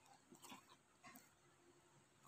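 Faint sticky squishes and small pops of glossy slime being kneaded and stretched by hand, with a few soft clicks in the first second or so.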